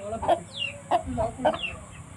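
Aseel hen clucking in short low calls, with chicks peeping in a few short cheeps that fall in pitch.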